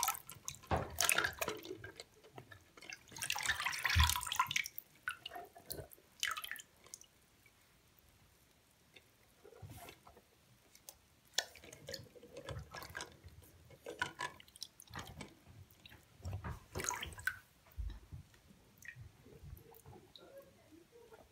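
Water splashing and dripping in a shallow-filled bathroom sink as a hand and a toy car move through it, in irregular bursts with a quiet stretch in the middle.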